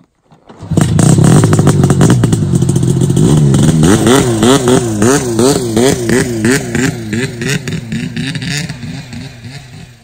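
Engine revving, starting suddenly about a second in; its pitch then swings up and down a little under twice a second, easing off toward the end.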